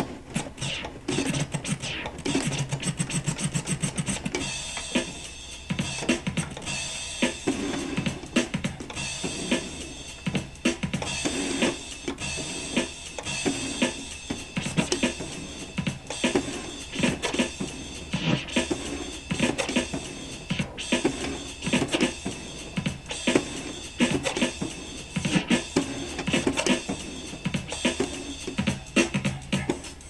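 Drum-heavy dance track played from a Pioneer CDJ-800 MK1, with the record scratched and worked back and forth on its freshly tightened jog wheel.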